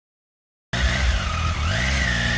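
Silent at first, then from about two-thirds of a second in, a Triumph Tiger 800 XCA's inline three-cylinder engine idles steadily, with a higher tone rising in pitch near the end.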